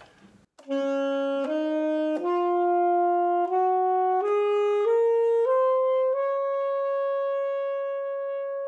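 Alto saxophone playing a B-flat major scale upward, eight notes one after another, starting about a second in. The top note is held long.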